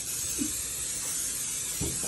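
Aerosol cooking spray hissing in one long, steady burst as it coats a cast-iron skillet.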